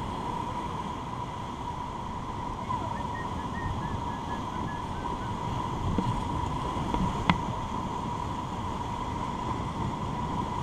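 Rushing whitewater of a river rapid with wind buffeting the microphone, a steady even roar of water noise under a thin steady hum. A single sharp knock about seven seconds in.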